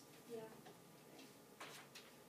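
Near silence: quiet room tone, with a brief faint voice early on, a few light ticks, and a short rustle about a second and a half in.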